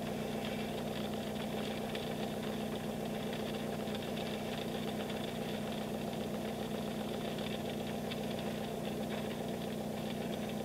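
Car engine idling steadily in neutral, heard from inside the cabin as an even low hum.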